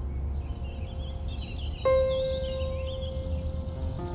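Soft ambient music with a single clear note struck about two seconds in and left to ring, over a low steady rumble and faint bird chirps.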